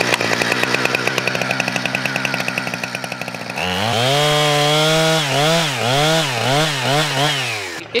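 Husqvarna two-stroke chainsaw running at a steady, lower speed, then from about three and a half seconds in revving up and cutting into a log. Its engine pitch dips and rises over and over as the chain bites, and it cuts off just before the end.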